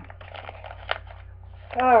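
Plastic packaging of a mesh wig cap crinkling and rustling as it is handled, with one sharp click about halfway through.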